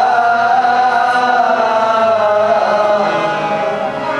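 Sikh kirtan: men singing a hymn in a chanting style, held notes gliding slowly, over a steady harmonium accompaniment.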